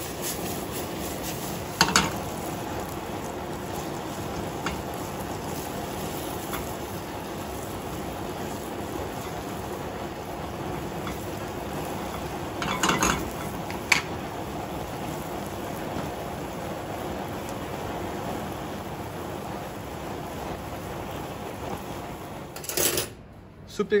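Strips of butternut squash frying in oil in a stainless steel sauté pan over a gas flame, with a steady sizzle. A few sharp clinks of the pan and spatula come about two seconds in and again around thirteen to fourteen seconds.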